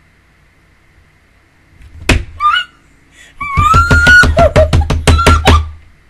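A woman's loud, high-pitched excited squeal, first a short one and then a long held one, with a run of rapid thumps, about four a second, from her hands pounding.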